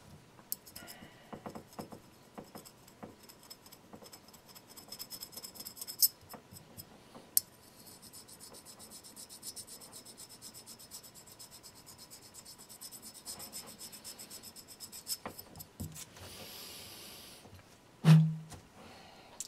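Very fine metal file scraping in short repeated strokes across hardened white epoxy filler on the rim of a porcelain vase, levelling the fill with the surrounding surface. Two sharp clicks come about six and seven seconds in, and a brief hiss shortly before the end.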